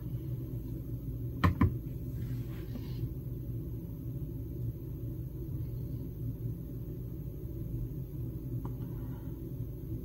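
Steady low hum of room tone, with two sharp clicks close together about one and a half seconds in.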